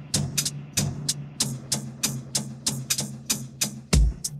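A hip-hop drum beat played back as an isolated drum stem split out of a full track by AI stem separation: crisp, quick drum-kit hits about four or five a second, with a heavy kick drum near the end.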